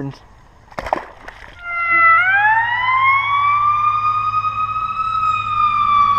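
An emergency vehicle siren starts a wail about two seconds in: its pitch rises steadily, holds high, then begins slowly to fall. A single sharp click comes about a second in.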